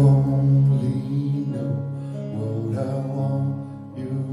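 Live band playing a slow song introduction: long, low sustained notes from electric guitar and keyboard, changing pitch a few times.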